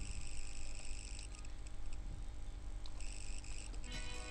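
Faint background noise: a low steady hum with a thin high hiss that drops out for about two seconds in the middle.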